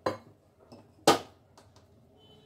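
Wooden rolling pin knocking against a wooden rolling board while puri dough is rolled out: two sharp knocks about a second apart, the second louder, with a few lighter taps.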